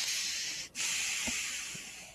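Hissing noise over a video-call audio line, in two stretches of about a second each with a short break between, fading slightly.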